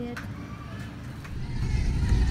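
Faint room tone with a couple of light clicks, then about one and a half seconds in a loud low rumble comes in and keeps going.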